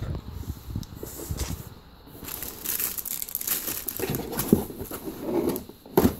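Plastic packaging crinkling and rustling in irregular bursts as bagged items are handled, getting busier about two seconds in.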